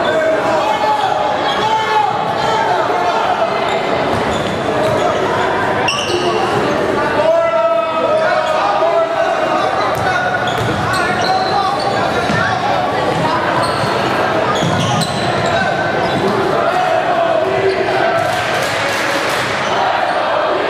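Basketball game sound in an echoing school gym: a ball dribbled on the hardwood court, sneakers squeaking now and then, and the crowd and players talking and calling out throughout.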